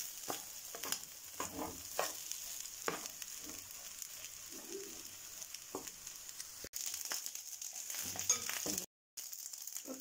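Fried rice sizzling in a frying pan while a wooden spatula stirs and scrapes through it, giving scattered short knocks over the steady sizzle. The sizzle grows louder about two-thirds of the way through, and the sound cuts out for a moment near the end.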